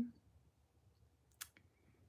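Near-silent room with a single short, sharp click about one and a half seconds in.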